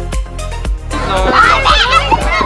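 Background music with a steady beat; about a second in, domestic geese start honking loudly over it, several calls overlapping.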